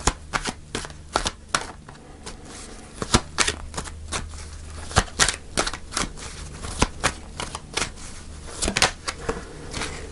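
A tarot deck being shuffled by hand: a dense, irregular run of sharp card snaps, several a second.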